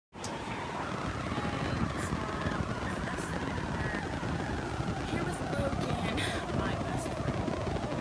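Steady rumbling noise on the recording, with voices faintly heard through it.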